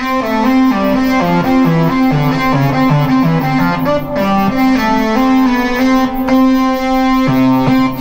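Behringer 2600 analog synthesizer playing a Moog-ish lead patch: a run of changing notes over a steadily held note that breaks off briefly about five seconds in.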